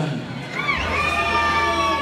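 A high-pitched voice shouting: a short rising cry about half a second in, then one long held yell that runs to the end.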